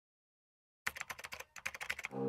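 Keyboard-typing sound effect: a quick run of key clicks, about a dozen a second, starting about a second in.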